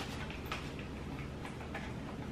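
A few faint, light clicks as a small pill box is handled and snapped shut, the clearest about half a second in and a few more near the end.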